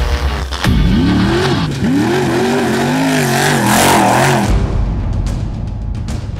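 Off-road race truck's engine revving hard, its pitch rising and falling several times over about four seconds, with music behind it. The music's deep bass drops out while the engine is heard and comes back near the end.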